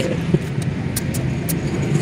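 A steady low engine hum, like a motor vehicle running, with a few faint clicks.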